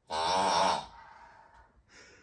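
A red plush noise-making toy, squeezed by hand, gives out one voice-like sound with a wavering pitch that lasts under a second and then fades.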